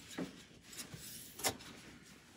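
Two faint short knocks, about a second and a quarter apart, of things being handled in a small room, over quiet room tone.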